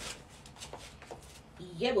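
Faint rustling and soft light taps of a person moving and turning in a small room, with a woman's voice starting near the end.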